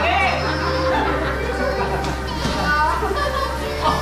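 Several people's voices, children's among them, calling out and chattering excitedly over background music with a steady bass line.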